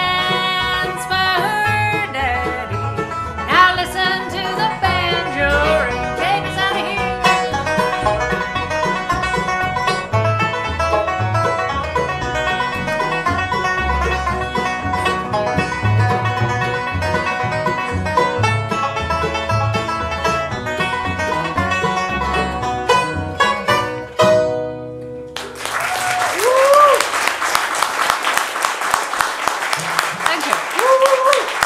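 Acoustic bluegrass band playing, with mandolin, banjo, upright bass and guitar under sung vocals. The tune ends with a final chord about 25 seconds in, followed by audience applause with a few voices calling out.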